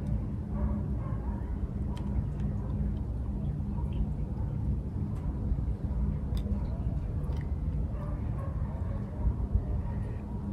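A few faint clicks of a screwdriver working at a screw on a marine compass housing, over a steady low rumble with a faint hum.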